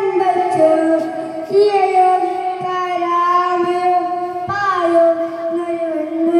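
A child singing solo into a microphone with no accompaniment, holding long, steady notes and moving between pitches in slow steps, heard through a public-address loudspeaker.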